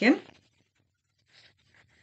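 The end of a spoken word, then near silence with two faint, brief soft rustles about a second and a half in.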